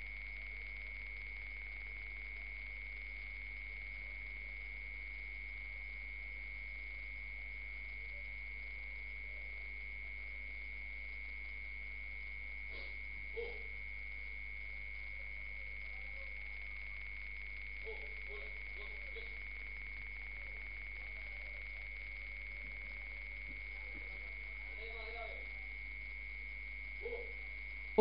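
A steady high-pitched electronic tone held at one pitch, with faint voices a few times.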